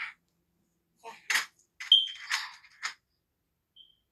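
Handling noise in several short rustling, clattering bursts, with a brief high beep about two seconds in and another near the end.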